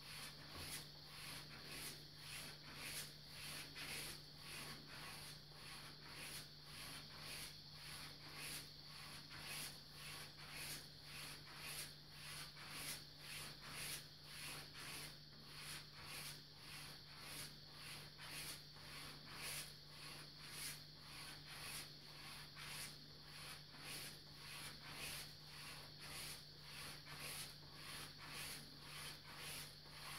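Straight razor stropped on a red latigo leather hanging strop for finishing: a faint swish with each pass of the blade over the leather, about two strokes a second, evenly spaced and even in strength. A steady low hum runs underneath.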